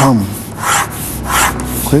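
Pencil sketching on paper: two long drawing strokes, each a brief scratchy rasp, a little under a second apart.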